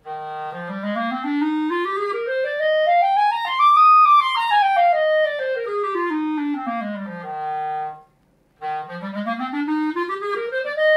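Backun Protégé B-flat clarinet in cocobolo wood playing a scale that climbs about three octaves from the bottom of its range and comes back down, ending on a held low note. After a brief breath another rising scale begins near the end.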